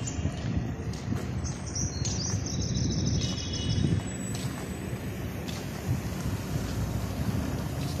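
Outdoor background noise: a steady low rumble, with birds chirping briefly during the first half.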